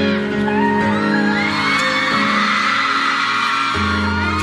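The intro of a pop song starting abruptly on a concert sound system, with steady held synth tones and a crowd of fans screaming over it. A deep bass layer comes in near the end.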